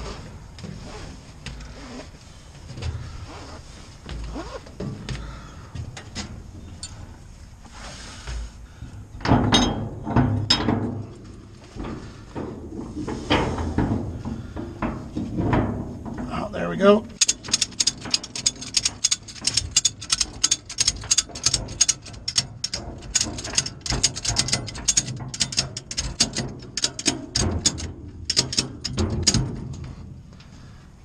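A 5,000 lb Erickson ratchet strap being tightened. The webbing is pulled and worked through the ratchet with scraping and rubbing sounds. From about halfway in, the ratchet handle is cranked back and forth in quick strokes, making rapid runs of clicks as the strap takes up tension.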